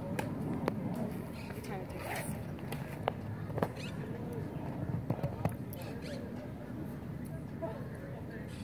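Indistinct chatter of spectators' voices around an outdoor baseball field, with a few sharp knocks: one about a second in, two around three seconds in, and a short cluster a little past five seconds.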